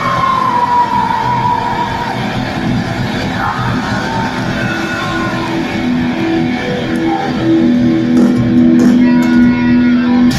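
Heavy metal band playing live at full volume, with distorted electric guitars, bass and drums, heard from within the crowd. A high note slides down in the first couple of seconds, and a long held note rings louder near the end.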